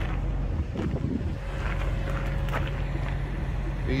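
Steady low mechanical hum, with a short gust of wind noise on the microphone about a second in.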